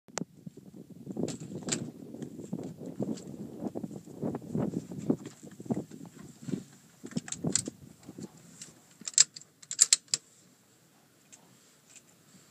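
Irregular knocking and rustling as a person climbs into a wooden shooting platform and settles prone behind a bipod-mounted rifle: boots and gear bumping on the wooden boards and frame. A few sharp, loud clicks come about nine to ten seconds in, then it goes quiet.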